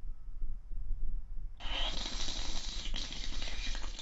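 Aerosol whipped-cream can spraying straight into a mouth: a steady hiss that starts about halfway through, breaks off for a moment near the end and starts again.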